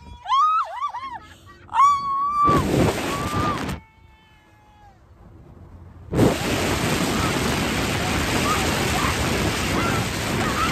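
Wind rushing over a phone microphone held out of a moving car's window. The noise cuts in and out abruptly, with a quieter gap after the middle. In the first couple of seconds a woman gives high, wavering squealing yells.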